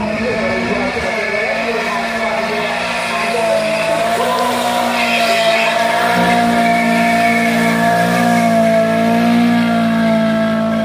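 Drift car sliding sideways with its engine held at high revs and its tyres squealing, a steady sustained note that grows louder as the car comes closer.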